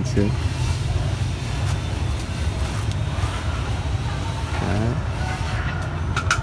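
A steady low rumble of outdoor background noise, with a brief voice right at the start and another short one about three-quarters of the way through.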